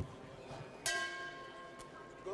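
A single strike of a metal bell, most likely the ring bell, about a second in, its ringing tones fading over about a second over a low arena background.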